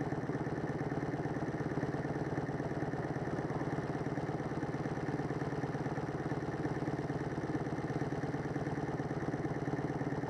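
Motorcycle engine idling steadily while the bike stands still, a low, even pulse with no revving.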